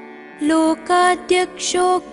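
Melodic chanting of a Sanskrit stotram of Ayyappa's names over a steady drone. The voice comes in about half a second in, after a short gap with only the drone, and goes on in short phrases.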